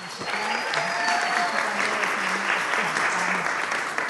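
Audience applauding, a steady clapping that runs through without a break.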